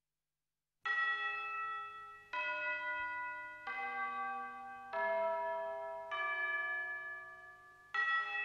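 Karaoke backing track opening after almost a second of silence with a slow melody of struck bell-like tones. There are five notes, each ringing and fading before the next.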